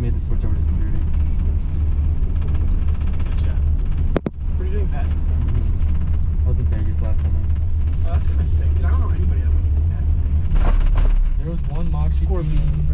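Steady low rumble of a gondola cabin running along its haul rope, heard from inside the cabin, with faint talking. There is a sharp click about four seconds in, and the rumble grows louder for about a second near the end.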